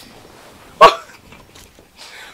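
A man's single short, loud burst of laughter about a second in.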